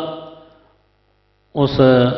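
A man's voice over a microphone and loudspeakers dies away with an echo. A pause follows in which only a faint, steady electrical mains hum is heard, and the voice starts again near the end.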